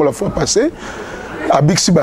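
Speech only: a man talking, with a short pause near the middle.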